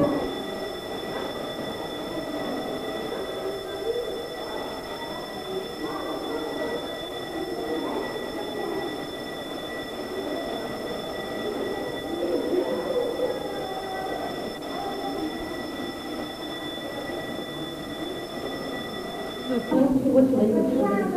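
Indistinct background voices and chatter, with a steady high-pitched whine of several tones over them that stops just before the end.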